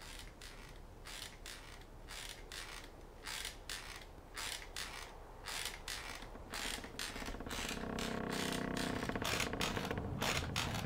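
Repeated mechanical clicking and creaking, about two to three clicks a second, coming closer together toward the end. A drawn-out pitched creak builds underneath in the last two seconds.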